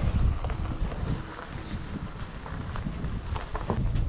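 Wind buffeting the camera microphone, an uneven low rumble, with a few faint ticks of movement.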